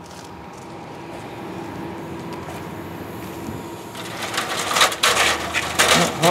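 Air-fed paint spray gun hissing in uneven bursts, starting about four seconds in, over a steady low hum.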